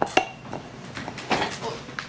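A chocolate Labrador scratching and shifting on a couch: a couple of sharp metallic clinks near the start, then a rustling burst with more clinks a little past the middle.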